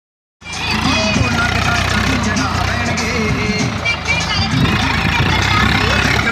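Swaraj 744 XM tractor's diesel engine running under load as it hauls a laden trolley, starting about half a second in, with music and voices mixed over it.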